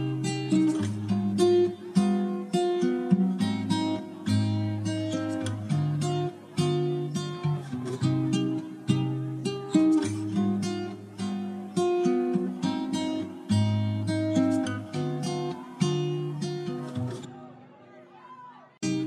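Background music: acoustic guitar picking a quick run of plucked notes over low bass notes, breaking off about a second before the end.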